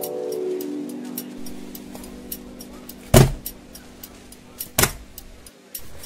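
A bell-like jingle of descending notes that ring on and fade over the first two seconds. Then a faint quick ticking with two loud sharp knocks about three and five seconds in.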